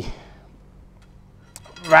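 A man's speech with a quiet pause over a steady low background hum, and one faint click just before the speech resumes.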